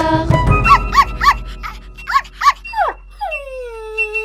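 Cartoon puppy sound effect: a run of about six short, high yips, then a long falling whimper.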